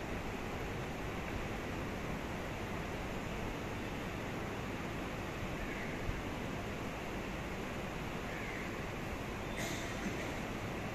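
Steady, even hiss of background room noise with no voices, and a single faint tick about six seconds in.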